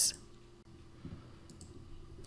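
Two faint computer mouse clicks in quick succession about one and a half seconds in, over quiet room tone.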